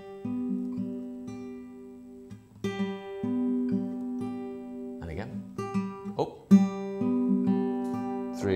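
Steel-string acoustic guitar fingerpicked: a C-shape G major chord built on octave Gs with the major third, its notes plucked one after another with the thumb, then the first and second fingers, and left to ring. The pattern is played about three times.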